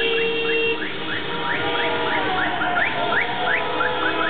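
Street celebration noise of car horns held and honked, with a fast run of short rising chirps, a few a second, over traffic.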